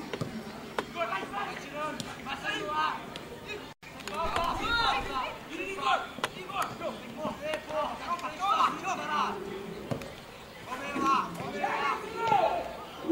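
Several men's voices calling out across a football pitch during play, unclear and overlapping, with a few faint sharp knocks and a brief dropout about four seconds in.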